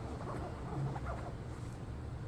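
Faint, short, scattered sounds from a pet fox nosing into a plush pet bed, over a steady low hum.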